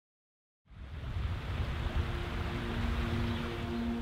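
Silence, then about a second in a steady rushing ambience fades in, heavy in the low end. From about two seconds in, a few soft sustained music notes rise beneath it as a music cue begins.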